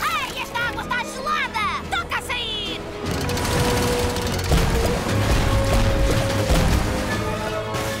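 Cartoon soundtrack: a character's wordless yelps and cries over background music for the first three seconds, then background music alone with held notes.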